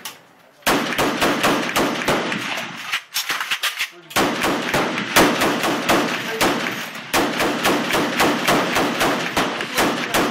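Browning M1919 belt-fed machine gun firing strings of rapid shots, several a second. It fires three long runs with short breaks about three and seven seconds in.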